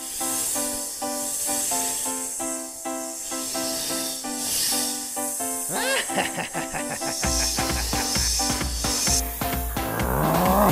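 Background music with steady repeated notes, overlaid by a high, swelling and fading snake-like hissing. A quick up-and-down pitch-sweeping effect comes about six seconds in, and a deep bass beat joins a second later.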